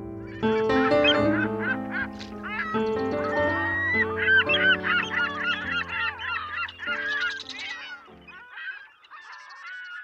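A flock of geese honking, many calls overlapping, over piano music. The piano stops about eight seconds in and the honking carries on more faintly to the end.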